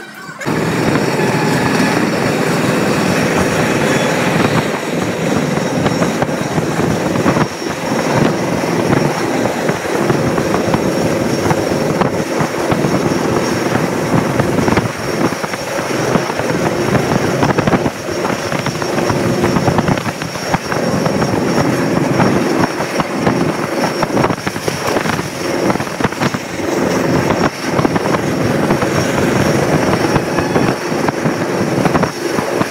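A moving passenger train heard from inside the coach by a barred window: a steady loud rumble and rush of wheels on the rails and passing air. It starts abruptly just after the beginning.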